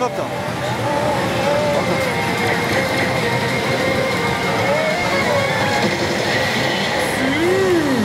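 Steady din of a pachislot parlour: many slot machines running together, full of electronic tones, jingles and recorded voices, with no break in the level. The slot machine being played has just hit a bonus.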